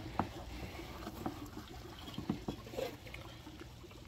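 Faint water drips and small splashes from an emptied plastic container into a fish tub, with a few light ticks scattered through.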